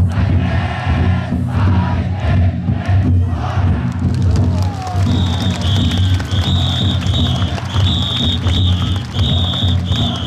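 Taiko drums inside massed Niihama taikodai drum floats beating a steady deep rhythm under a crowd of bearers shouting and chanting. From about halfway, a shrill whistle sounds in short repeated blasts, a little more than one a second.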